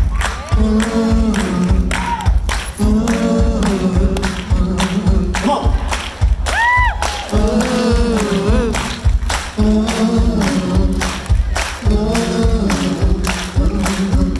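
Live rock song sung by a male lead voice with others joining in, over a steady beat of hand-clapping. A short high rising-and-falling whistle or whoop cuts through about seven seconds in.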